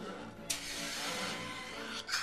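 Dental suction hose switched on in the mouth: a sudden hiss that starts about half a second in and carries on, with music playing underneath.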